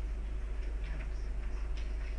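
A few light computer mouse clicks, about halfway through and again near the end, over a steady low electrical hum.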